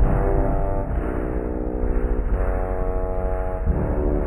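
Instrumental hip-hop beat with held synth chords over heavy bass, muffled as if filtered. The chord changes about two seconds in and again near the end.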